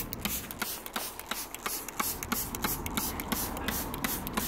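Hand trigger spray bottle squeezed over and over, each pull giving a short spritz of soapy water onto the leaves, a few spritzes a second.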